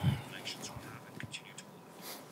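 Faint handling noise near a lapel microphone, with a soft thump at the start and then light rustles and scrapes, as interpretation headphones are lifted off the ears.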